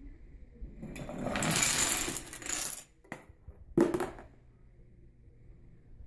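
A homemade Rube Goldberg machine running: small hard pieces rattle and clatter for about two seconds. A couple of clicks follow, then a sharp clatter a little before the middle of the second half, as the marble drops into a plastic bin.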